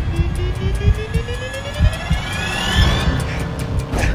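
Trailer tension riser: several tones climb together into a rising whine over a deep, pulsing rumble. It builds for about three seconds, then cuts off.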